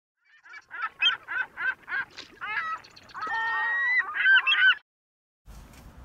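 A run of short honking calls, about three a second, then one longer drawn-out call about three seconds in, and a quick few more before they stop near the end.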